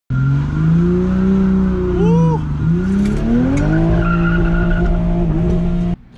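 Toyota A90 Supra's engine heard from inside the cabin, revving, dipping and then climbing to a high held pitch, with tyres squealing as in a burnout.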